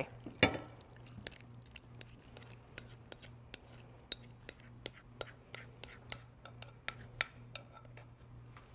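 A spatula scraping a creamy mixture out of a glass mixing bowl into a glass baking dish, giving faint, irregular light clicks and taps of utensil and glass, a few a second. A louder knock comes about half a second in.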